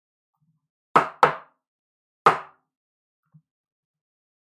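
Three sharp knocks of a hard plastic card toploader tapped against a tabletop: two in quick succession about a second in, and a third about a second later.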